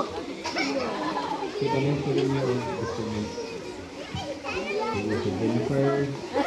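Crowd of children and adults talking at once, with children's voices prominent in the chatter.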